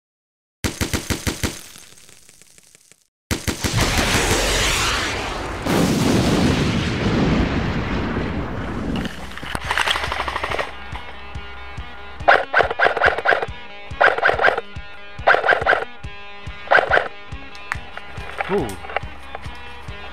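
Airsoft guns firing short bursts of rapid full-auto clicks over background music. One burst comes near the start and four more come about a second and a half apart in the later part. A loud rushing noise fills several seconds between them.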